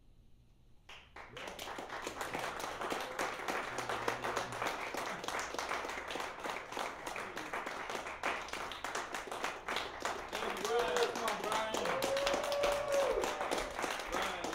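Audience applause breaking out about a second in after a silence, many hands clapping, with a few voices whooping in rising-and-falling calls near the end.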